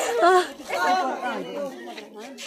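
Several people talking at once, casual overlapping chatter.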